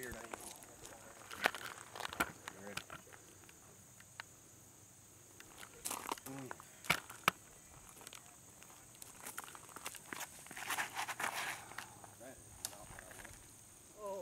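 A steady high-pitched insect drone runs throughout, with scattered scuffs and clicks of footsteps on a gravel tee and a denser stretch of shuffling steps about ten to eleven seconds in.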